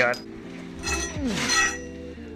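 Steel square-tube crossbar and brackets clinking and scraping against the car's underside as they are held up for a test fit, in one short burst near the middle with a light metallic ring.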